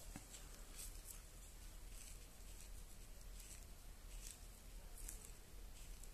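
Near silence: room tone with a few faint, scattered soft ticks.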